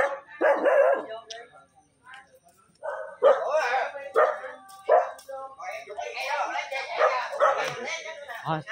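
A dog barking in short separate bursts, mixed with a person's raised voice.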